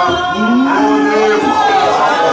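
Worship singing: a man's amplified voice holds long notes that slide up and down, a little rise in pitch about half a second in, with other voices beneath.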